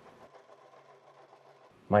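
Sewing machine with a walking foot stitching knit fabric, a faint, steady mechanical hum lasting about a second and a half.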